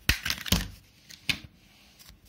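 Clear plastic blister tray of a RAM kit being pried open by hand, clicking and crackling: three sharp clicks in the first second and a half, the loudest about half a second in.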